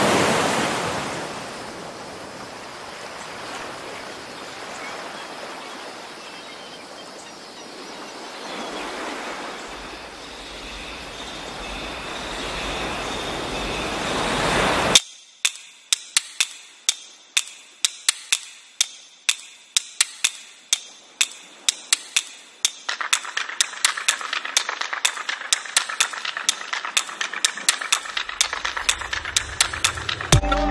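Sea surf and wind rushing on a shore, swelling and fading, cut off suddenly about halfway. Then a long run of sharp, irregular clicks, a few a second, from a swarm of crabs' legs and claws on rock, with a faint high tone joining in during the last third.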